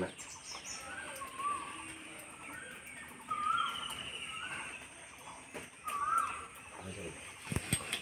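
Birds calling, several short whistled notes that rise and fall, repeated at irregular gaps. Near the end come a couple of sharp knocks, a knife chopping down onto a wooden chopping block.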